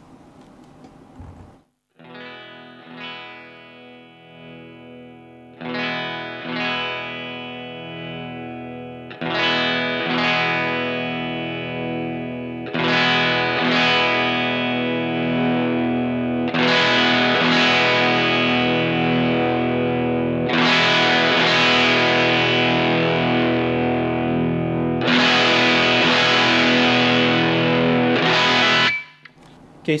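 Electric guitar chords strummed on a Telecaster's bridge pickup through a single-ended EL84 valve amp (a Vox AC4 modded toward a Marshall Class 5 circuit), heard through a cab simulator. The gain is turned up in steps between chords, so each chord comes out louder and brighter. The tone goes from sparkly clean to a hard classic-rock crunch, and the last chord is cut off near the end.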